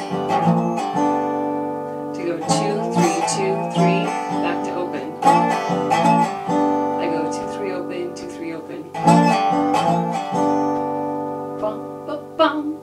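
Resonator guitar in open G tuning, strummed with a slide in a bluesy chord progression, sliding up from the second to the third fret. The chords ring on between groups of strums about every three seconds.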